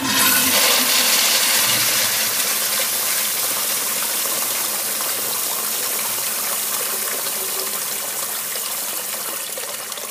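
1980s Eljer urinal flushed by an older Auto-Flush sensor flushometer, triggered by a hand at the sensor: a pretty powerful rush of water that starts suddenly and slowly dies away as the bowl drains.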